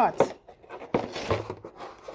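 Clear plastic packaging crinkling as it is handled, with a few sharp clicks.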